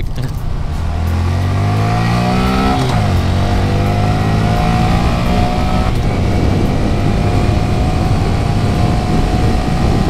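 Honda Grom's 125cc single-cylinder engine accelerating hard: revs rise, drop sharply at a gear change about three seconds in, then climb steadily again in the next gear.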